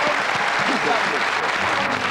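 Audience applauding, with voices mixed in among the clapping.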